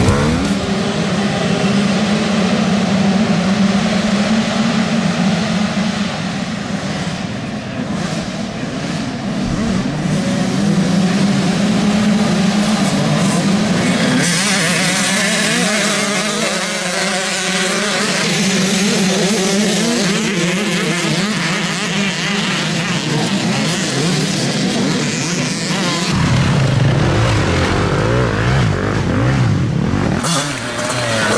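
Enduro dirt bike engines running and revving as riders pass, with the pitch rising and falling in the middle section under a steady low hum.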